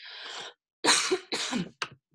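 A person coughing: a soft intake of breath, then two sharp coughs about a second in and a short third one just after.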